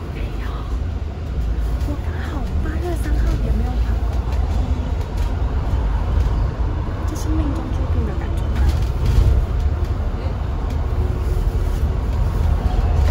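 Steady low engine and road rumble inside a moving bus, heard from a passenger seat, with faint voices in the background.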